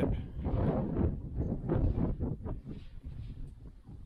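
Wind buffeting the microphone outdoors: an uneven, gusting low rumble that rises and falls in waves, dropping off near the end.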